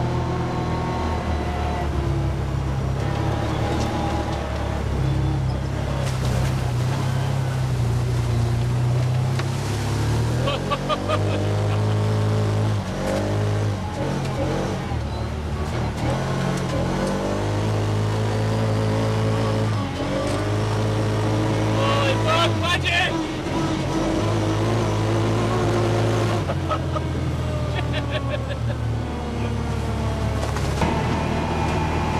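Side-by-side UTV engine running as it is driven over a rough dirt trail, the engine note rising and dropping repeatedly with the throttle.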